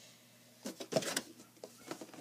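A few brief knocks and rustles about a second in, from something being picked up and handled: the Lego set's cardboard box being lifted. The rest is quiet room tone.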